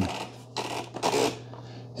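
OXO Brew conical burr grinder's plastic bean hopper being turned to change the grind setting, scraping against the housing in two short bursts.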